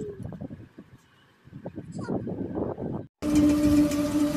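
Indistinct low rustling and handling noise, dipping quiet about a second in. Near the end it breaks off in a short dropout, and instrumental background music with a long held note starts.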